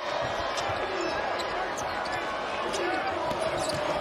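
Arena crowd noise during a college basketball game, with a basketball being dribbled on the hardwood court in a few short knocks.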